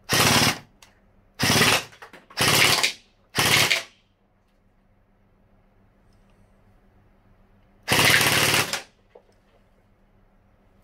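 LeHui Sig552 battery-powered gel blaster firing short bursts on full auto, a fast rattle of shots. There are four bursts in quick succession, then a pause, then a fifth burst about eight seconds in.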